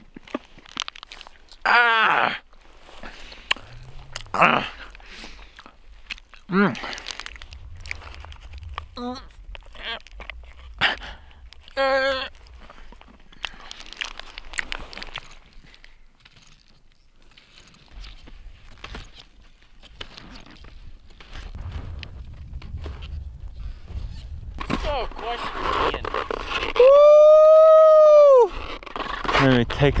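A man groaning and grunting without words while biting and chewing a Clif bar frozen hard as ice, with crunching bites. Near the end comes one long, loud shout.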